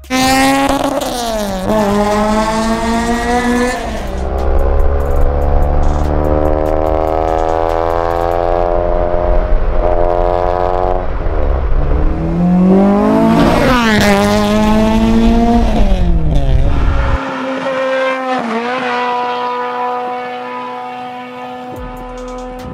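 Honda Civic Si's naturally aspirated K20 2.0-litre four-cylinder with a straight-through exhaust, revving hard: the pitch climbs, drops at the shifts and climbs again, with sharp rise-and-fall sweeps past the middle. It settles to a steadier, thinner tone near the end.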